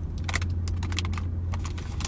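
Close-up eating sounds as a bite of banana nut bread is chewed: a string of small irregular clicks and crunches, over a steady low hum.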